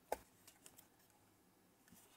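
Faint handling clicks and taps of fingers working a small antenna cable connector inside an opened plastic radio transmitter case. One sharper click comes just after the start, then a few softer ticks.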